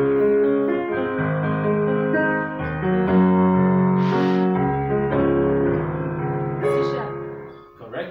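Casio electronic keyboard playing a sequence of piano-voiced chords, each held about a second before the next, fading out near the end. A brief hiss-like noise sounds about four seconds in.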